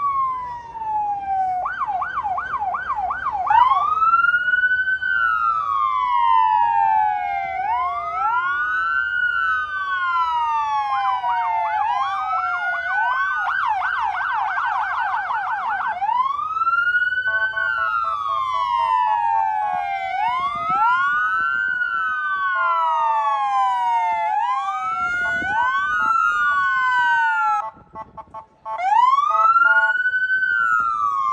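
Police car sirens wailing, rising and falling about every three seconds, with more than one siren sounding out of step. Twice they switch to a fast yelp, and a steady pulsing horn-like tone cuts in briefly twice in the second half.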